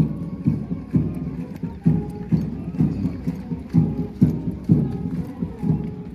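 Parade band playing a march for marching troops: a steady drum beat about twice a second under held band notes.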